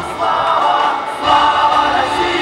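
A choir singing a song over instrumental backing, with sustained, held notes.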